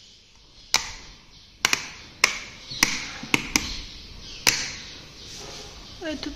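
Rocker light switches on a modular wall switch panel being pressed one after another by finger, giving about eight sharp, irregular clicks over a few seconds.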